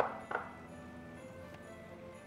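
Background music with two brief clinks in the first half-second, a small glass bowl of green peas knocking as it is handled.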